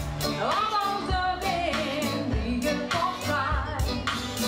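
Live band playing: a woman sings the lead with vibrato and sliding notes over electric and acoustic guitars and a steady drum beat.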